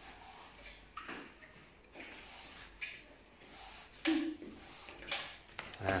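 Red-breasted parakeet clambering on a metal wire birdcage: a few scattered light knocks and rustles, with one sharper, louder sound about four seconds in.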